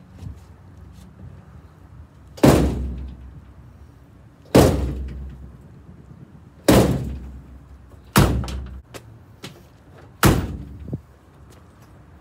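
Five heavy blows about two seconds apart from a rubber mallet on the steel door of a 1948 Ford F1 pickup, each with a brief metallic ring. The door is being knocked into line because it sits out of true with the cab.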